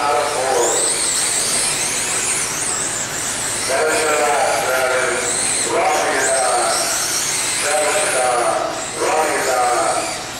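1/10-scale electric RC sprint cars racing laps, their motors giving a high whine that rises and falls again and again as the cars pass.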